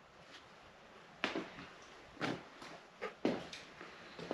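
Handling noise: a few soft, short knocks and clicks, roughly a second apart, that grow closer together near the end, with quiet in between.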